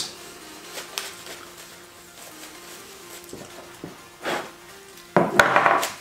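Toilet paper rubbing over a steel rifle bolt as it is wiped down, with light clicks of metal handling, then a louder, sudden burst of handling noise near the end.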